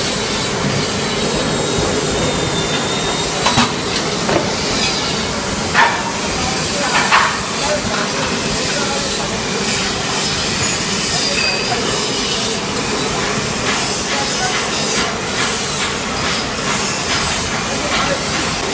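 Automatic die-cutting machine for card and corrugated paperboard running: a loud, steady mechanical noise with a hiss, with a few sharp knocks between about three and seven seconds in.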